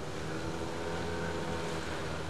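Outboard motor of a Zodiac inflatable boat running steadily under way, with wind and water rushing past.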